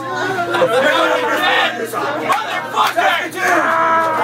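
A small crowd shouting and yelling together at close range, many voices overlapping.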